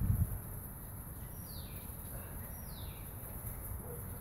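A bird calls twice, each a quick note falling in pitch, over a steady low background rush.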